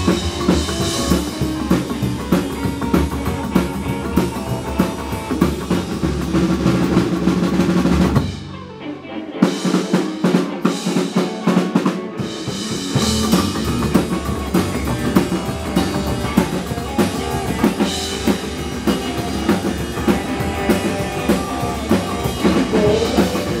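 Psychobilly band playing live: upright bass, electric guitar and drum kit. About eight seconds in the band cuts out suddenly. For a few seconds the drums play alone, then the full band comes back in.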